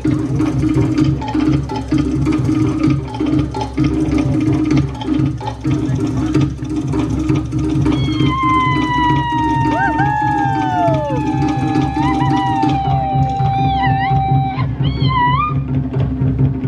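Live Polynesian drumming with a fast, steady beat. About halfway in, a high sliding tone with overtones comes in over the drums, swooping down and then holding.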